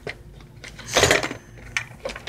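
Blister-packed fishing lures clattering against a plastic storage box as a packaged spinner is put in among them, with light clicks and one louder rattle about a second in.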